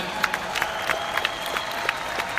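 Audience applauding, with sharp individual hand claps from people close by standing out irregularly.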